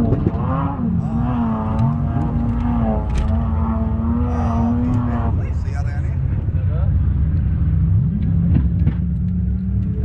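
Low, steady rumble of 4x4 engines running. For about the first five seconds a wavering, voice-like pitched sound rides over it, then stops.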